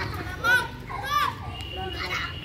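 Children's voices: two high-pitched calls, each rising and falling in pitch, about half a second and just over a second in.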